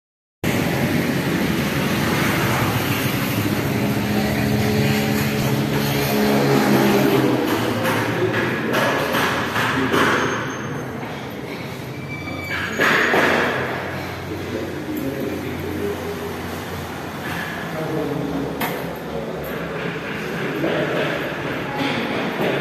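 Traffic noise with a motor engine running past during the first several seconds, then quieter steady background noise with a few swells.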